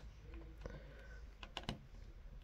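A few faint plastic clicks as a LEGO minifigure is handled and set down on a LEGO baseplate, three of them close together in the second half.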